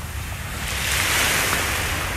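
Small waves breaking and washing up on a sandy shore, the surf swelling about a second in. Wind rumbles on the microphone underneath.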